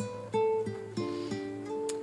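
Background music: a plucked guitar-like instrument picking a short melody of single notes, about three notes a second, each ringing briefly.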